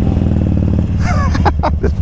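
Harley-Davidson V-twin engine running steadily at low speed as the motorcycle rolls off, with a brief laugh about a second in.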